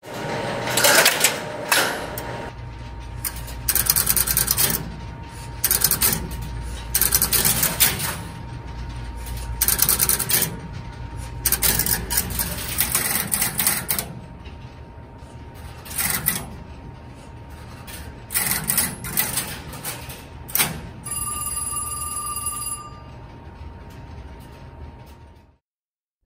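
Bell System No. 1 Crossbar telephone switch at work: bursts of relays and crossbar switches clicking and clattering as a call is set up through the line link, senders and markers, over a faint steady tone. A short high buzzing tone sounds for about two seconds near the end.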